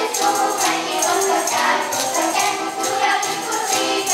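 Children's choir singing a Ukrainian folk song, accompanied by the rhythmic clacking of a trishchotka, a folk clapper of wooden plates strung together.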